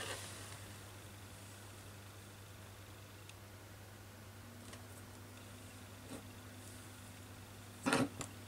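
Quiet room with a steady low hum, and a few faint soft ticks and rubs of hands pressing freshly glued paper cut-outs down onto a journal page.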